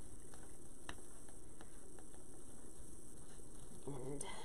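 A few faint ticks and clicks from stiff 18-gauge craft wire being twisted around a metal wreath rail, among rustling deco mesh, over a steady background noise.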